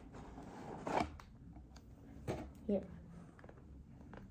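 Printed cardboard sleeve of a Pokémon Build & Battle Stadium box being slid off its black inner box: a short papery scrape about a second in, then a light tap a little later.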